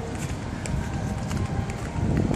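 Footsteps on pavement while walking, with a steady low rumble underneath.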